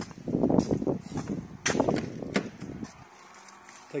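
Footsteps on a concrete workshop floor mixed with rustling and handling noise from a hand-held phone, with a few sharp knocks among them in the first two and a half seconds.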